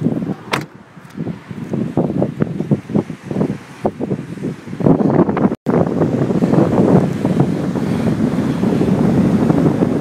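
Strong storm wind buffeting the microphone, in uneven gusts at first, then blowing more steadily after a brief dropout about halfway through.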